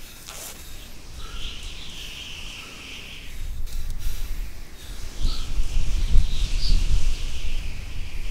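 Wind gusting, with a low rumble that swells and is loudest from about five seconds in, over a steady high hiss, with a few faint bird chirps.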